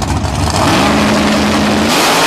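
Drag car's engine held at high revs, loud and steady, as its rear tires spin and smoke in a burnout on the strip; the engine note climbs in the first second, then holds.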